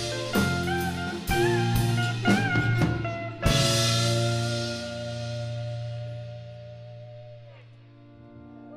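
Live folk-rock band ending a song: a few quick string bends on a lead guitar over drum hits and bass, then a final hit with a cymbal crash about three and a half seconds in. The held chord and cymbal ring out and fade away.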